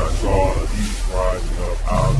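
Beast-like roaring, three short pitched calls in a row over a steady low rumble.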